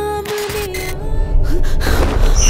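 Horror trailer soundtrack: a long held musical note fades, then a sharp gasp, and a sudden loud low rumble swells in at the end.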